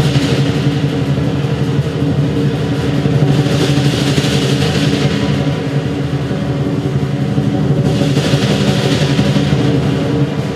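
Lion dance percussion band playing continuously: a drum rolling under ringing gong and clashing cymbals in a loud, dense din, the cymbals swelling about three seconds in and again near the end.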